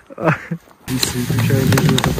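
Brief laughter, then a sudden change about a second in to a steady low hum with clicks and rustling.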